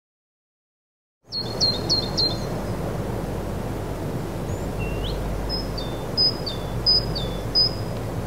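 Ambience with a steady low rumble, over which small birds chirp: first a quick run of four short chirps, then several two-note calls, each a high note stepping down to a lower one. It starts about a second in, after silence.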